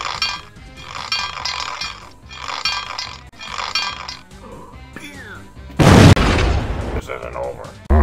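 Repeating music or laughter-like voice sounds, then a loud, sudden explosion sound effect about six seconds in that fades away over about a second.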